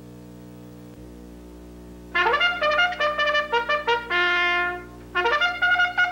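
Trumpet-led brass music starting about two seconds in: a run of quick short notes, one held note, then more quick notes. A low steady hum sits under it.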